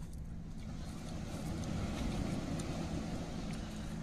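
A motor engine running steadily in the background, a low hum that grows louder around the middle and eases off, with faint small clicks over it.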